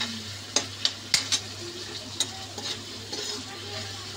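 Chopped onions, tomatoes and green chillies sizzling in oil in a metal kadai while a metal spoon stirs them, with several sharp clinks of the spoon against the pan in the first half and softer scraping after.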